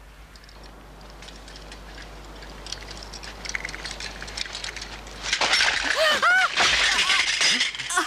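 A woman is seized during a struggle: from about five seconds in there is sudden loud clattering and scuffling with several short, high cries from her, after a quiet stretch while she rides her bicycle.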